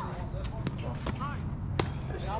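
Two sharp knocks, the louder one near the end with a short ring, as the pitched softball reaches home plate; brief snatches of voices in between.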